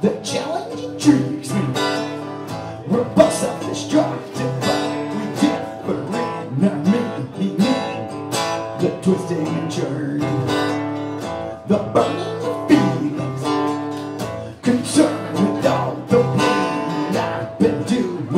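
Acoustic guitar chords strummed in a steady rhythm.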